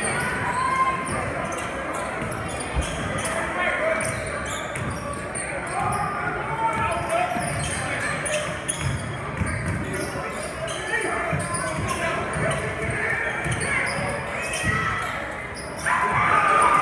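Basketball being dribbled on a hardwood court during live play, over the steady chatter of a crowd in a large gym.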